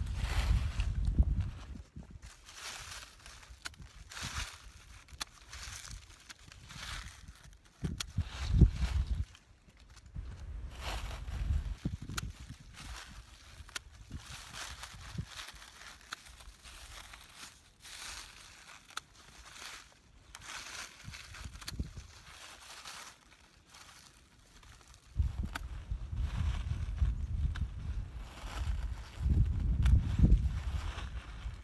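Dry, dead strawberry leaves rustling and crackling as gloved hands gather and clear them from the bed. Bursts of low rumble come near the start, around nine seconds in, and through the last five seconds.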